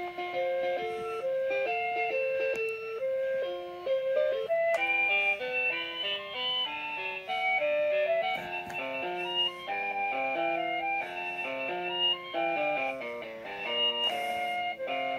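LeapFrog Alphabet Pal caterpillar toy playing an electronic melody through its small speaker, note after note in a continuous tune. On fresh batteries it sounds a little bit high pitched.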